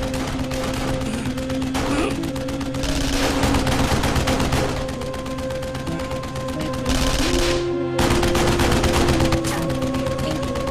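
Sustained rapid gunfire: many shots in quick succession from pistols and automatic weapons, over a steady dramatic music score. The firing breaks off briefly near eight seconds in, then resumes.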